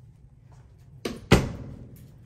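A closet door being handled: two sharp knocks about a quarter second apart, the second louder and ringing briefly. A low steady hum sits underneath, the kind the house's air-conditioning unit makes.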